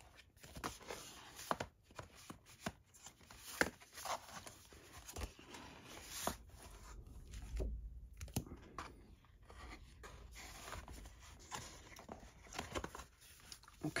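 Printed paper sheets and a stiff card sleeve being handled and lifted out of a cardboard box: irregular rustles, slides and light taps of paper and card, with a soft thump about halfway through.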